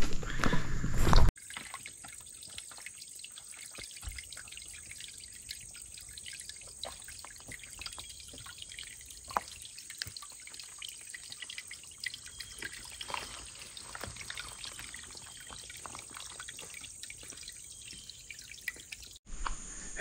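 A faint trickle of water running and dripping down wet rock steps, with scattered small drips, at a waterfall that is nearly dry. It starts after a louder noise in the first second or so.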